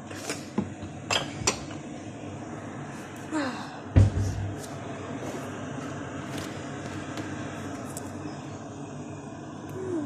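Kitchenware being handled on a counter: a few light clicks and taps from a spoon and mug in the first second and a half, then one heavy thump about four seconds in as something is set down, over a steady background hum.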